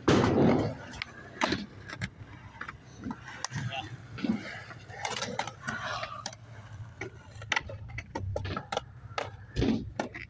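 A skateboard hits the top of a concrete skate box at the very start, the loudest sound, then its wheels roll on with a low rumble and scattered clicks and knocks, and another knock near the end.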